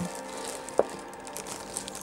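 Clear plastic bag crinkling as a wrapped machine is handled, with one sharp click a little under a second in, over faint background music.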